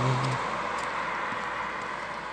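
A car going past on the road, its tyre noise hissing and fading away.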